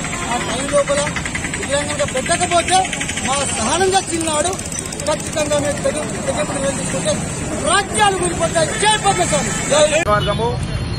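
Speech: a man talking to the camera in Telugu, with road traffic running steadily behind.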